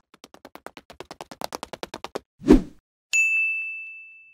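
Logo sound effect: a run of rapid clicks that quickens and grows louder for about two seconds, then a loud low whoosh-thump, then a single high bell-like ding that rings on and slowly fades.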